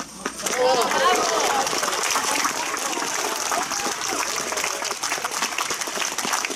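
Crowd applauding: a steady patter of many hands clapping, with a few voices calling out over it in the first second or so.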